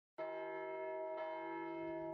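A church bell ringing with a long sustained tone, struck again about a second in.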